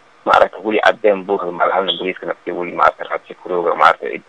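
Speech only: a man talking steadily in Somali with short pauses, the sound thin and narrow like a radio broadcast.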